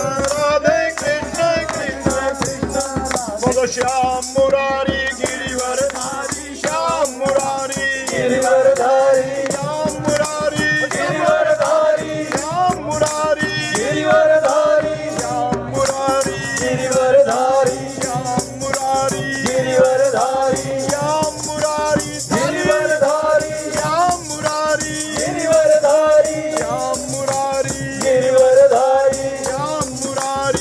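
Devotional group singing into a microphone, with hand-clapping and a handheld wooden frame rattle with small metal jingles shaken in a steady beat.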